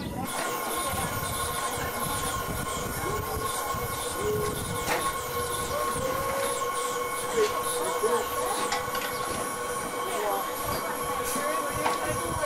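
Miniature live-steam locomotive standing, with a steady hiss of steam and a steady high-pitched whine, and voices in the background.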